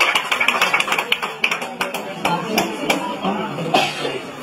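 Scattered hand clapping from a small audience, thinning out after about two seconds, with voices in the background.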